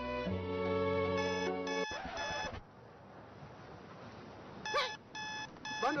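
Soft string music that breaks off about two seconds in as a mobile phone's alert starts: short electronic beeps in quick groups of two or three. After a lull the beeps come back near the end with a voice over them. The alert signals that the phone's data bundle is running out.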